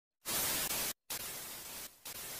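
Glitch-style TV-static sound effect: a loud burst of hiss lasting under a second, a sudden cut to silence, then a second, quieter burst of static.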